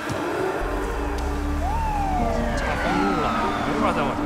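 Police siren wailing, its pitch gliding up and down from about a second and a half in, over a film score with steady held tones and a low rumble.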